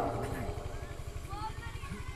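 A steady low rumble under faint voices in the background during a pause in amplified speech.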